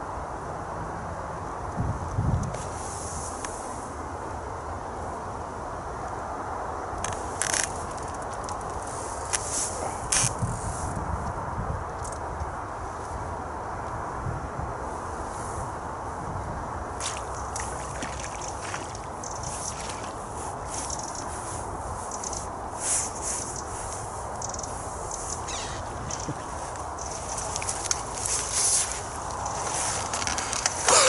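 Steady outdoor background hiss with scattered rustles and clicks, denser in the second half, from clothing and fishing tackle being handled on a reedy riverbank, and a couple of soft thumps.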